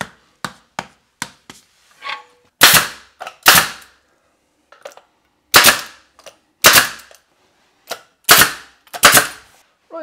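18-gauge brad nailer firing brads to pin wainscoting strips to the wall: about six sharp, loud shots roughly a second apart, after a few lighter clicks in the first two seconds.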